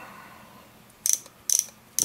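Sharp metallic clicks from the action of a Colt Frontier Scout single-action .22 revolver being worked by hand, with the hammer drawn back and the loading gate open. They come in two short groups, about a second and about a second and a half in.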